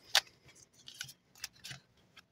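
A deck of oracle cards being shuffled by hand: a series of short, sharp card snaps and slides, the loudest just after the start and a few more about three-quarters of a second before the end.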